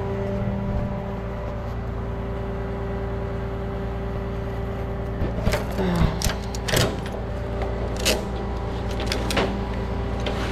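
Flatbed tow truck's engine idling steadily, with several sharp metallic clicks and clanks in the second half as the eight-point tie-down strap ratchets and hooks are released from the deck.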